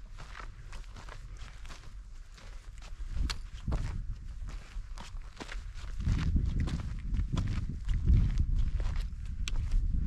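Hiker's footsteps on a mountain trail, a steady walking rhythm of footfalls, over a low rumble on the microphone that grows louder about six seconds in.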